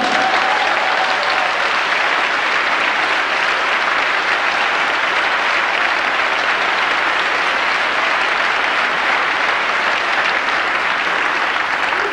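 A church congregation applauding: a long, steady round of clapping.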